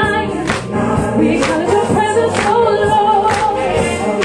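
Live gospel singing: a woman leads a worship song through a microphone, with other voices joining in over accompaniment that keeps a steady beat about once a second.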